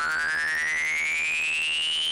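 Synthesized rising sweep tone, a transition sound effect, gliding smoothly upward in pitch over a low electronic pulse that beats about five times a second.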